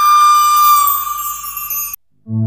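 Flute holding one long final note of a film song, sinking slightly in pitch and fading, then cut off sharply near the end.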